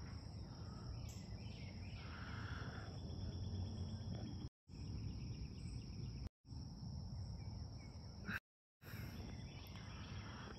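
Outdoor ambience: a steady high-pitched drone of insects over a faint low rumble. The sound cuts out completely three times, each for a moment.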